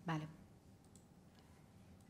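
A woman's brief "vale", then a quiet room with a few faint clicks about a second in, from a laptop being clicked on to the next slide.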